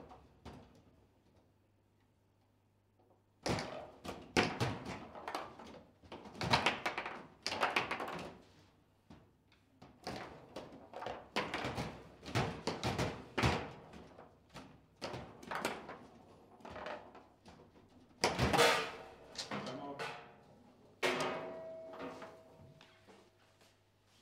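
A table football (foosball) rally: a fast, irregular run of hard knocks and clacks as the players' rod figures strike the ball and the ball bangs off the table walls, after a quiet opening few seconds. The loudest crack comes a little after the middle, and a strike near the end leaves a brief ringing tone; the point ends in a goal.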